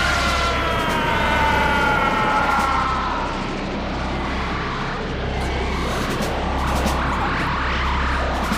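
Kamehameha energy-blast sound effect: a high whine that glides slowly down and fades within the first few seconds, over a steady rumbling roar that carries on.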